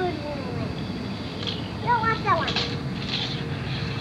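A young child's wordless voice, a short sing-song sound gliding in pitch about two seconds in, over steady low background noise.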